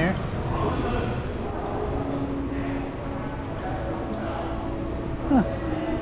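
Indistinct background voices over a steady indoor hum, with a short 'huh' from a nearby person near the end.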